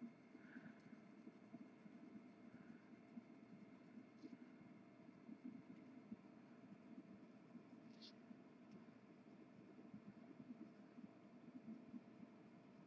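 Faint, irregular rubbing of a marker colouring on printed fabric, close to silence, with a couple of light ticks.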